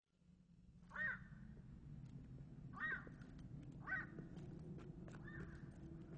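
Faint bird calls: four short calls spread a second or two apart, over a low, steady background hum.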